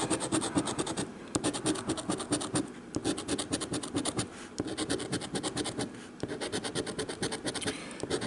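A coin scratching the coating off a lottery scratch-off ticket, in rapid back-and-forth strokes with a few short pauses.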